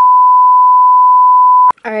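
A single steady, loud beep at about 1 kHz, an edited-in bleep tone of the kind used to censor a word, that cuts off abruptly near the end.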